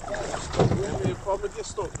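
Voices talking over a steady low background rumble of open water.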